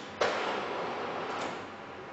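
A porcelain coffee cup is set down on a tray with a knock about a quarter second in, followed by about a second of fading noise.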